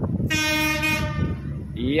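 Horn of the approaching KCJB feeder train: one short, steady blast lasting under a second, starting about a third of a second in.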